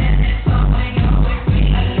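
Live electro-pop dance song played loud through a concert PA, driven by a kick drum on every beat, about two a second.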